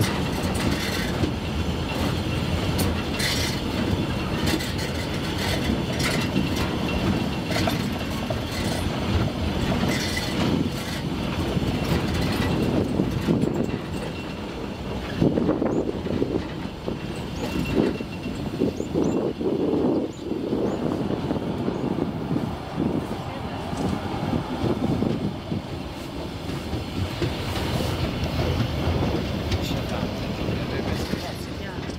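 Narrow-gauge train of the Wangerooge Island Railway running, heard from aboard a wagon: a steady rumble of wheels on the 1000 mm track, with scattered clicks and knocks as the cars clatter along.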